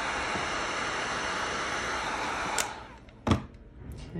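Wagner heat gun blowing steadily while shrinking heat-shrink tubing, cutting off with a click about two and a half seconds in as its fan dies away. A single knock follows as the gun is set down on the bench.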